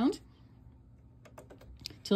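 Faint, light plastic clicks, a few in the last second, of a plastic yarn needle tapping against the plastic needles of an Addi 46-needle circular knitting machine as stitches are lifted off during a cast-off.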